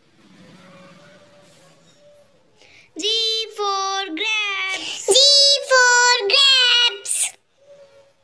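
A child's high voice sings a short phrase of several held syllables. It starts about three seconds in and stops after about four seconds. Before it there is only a faint low sound.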